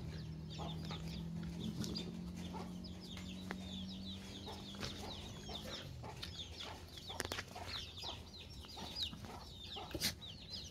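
Chicks peeping continuously in many short, high, falling chirps, with chickens clucking. A low steady hum runs underneath for the first five seconds or so, then fades.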